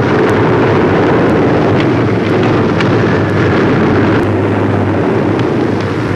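Propeller aircraft's piston engine running steadily, a constant low drone under heavy noise, heard through a hissy 1940s newsreel soundtrack.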